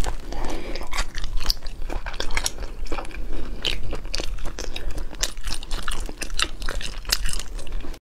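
Close-miked eating of spicy sauced shellfish: wet chewing and sucking with many short, sharp smacks and crunches, a few each second.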